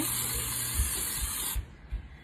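Pampered Chef Kitchen Spritzer, a pump-pressurised oil mister, spraying a fine mist of oil in one continuous hiss that cuts off about one and a half seconds in.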